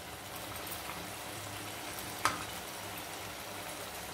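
Chicken and potatoes cooking in a clay pot over a gas burner, with a faint, steady sizzle and simmer, and one small click a little past halfway.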